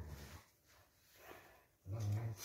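A dog growling low and faintly during rough play with another dog, stopping shortly after the start and starting again near the end. It is a warning growl, telling the other dog to stop what it is doing.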